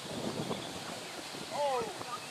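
Faint, distant voices over outdoor ambience, with one short voiced cry that slides in pitch about one and a half seconds in.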